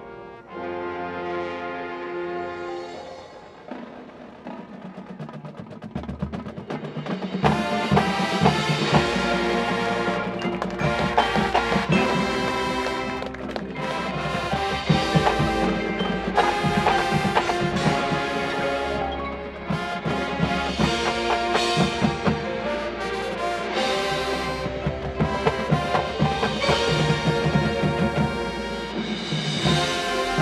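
High school marching band of brass winds and percussion playing: a soft held brass chord at first, then about seven seconds in the full band comes in loud with sharp drum and percussion hits and keeps playing.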